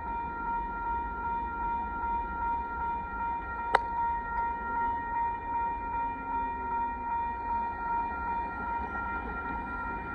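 Railroad crossing warning bell ringing steadily, a high metallic ding that runs together, while the crossing gates go up. One sharp click about four seconds in, over a low rumble.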